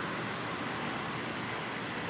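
Steady low background noise with no distinct events: room tone.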